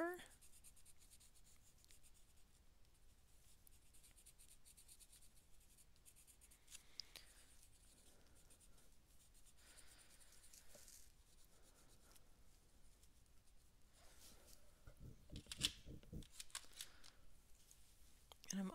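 Faint scratching of a Derwent Inktense pencil colouring on journal paper in short, scattered strokes, with a soft knock near the end.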